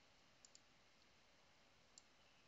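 Near silence with two faint, quick computer-mouse clicks about half a second in, and another at the very end.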